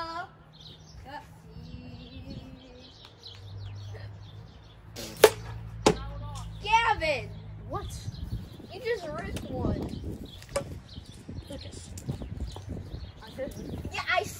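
Wiffle ball impact: a sharp crack about five seconds in, then a second, lighter knock less than a second later.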